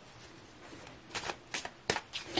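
A tarot deck being shuffled by hand: faint at first, then three short, sharp card sounds in the second half.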